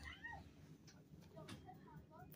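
Near silence with a few faint, short high-pitched vocal calls, one near the start and a couple more past halfway.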